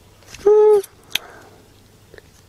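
A short hummed "mm" from a man, held on one pitch for under half a second, then a single light click of the plastic cassette shell being handled.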